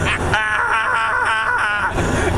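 A man's high-pitched, squealing laughter, wavering up and down in pitch in quick pulses.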